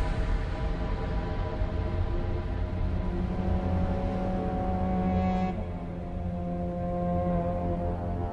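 Background score music: sustained held chords over a low drone, shifting to a new chord about five and a half seconds in.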